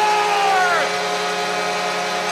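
Arena goal horn sounding a sustained chord, signalling a goal, over a cheering crowd. Its highest tone slides down and drops out about a second in while the lower tones keep sounding.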